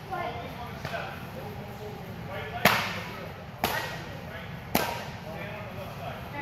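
Three sharp slaps of kicks striking a handheld taekwondo kicking target, about a second apart, the first the loudest.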